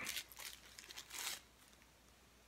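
A few faint, brief crinkles of plastic packaging being handled, spread over the first second and a half, then quiet.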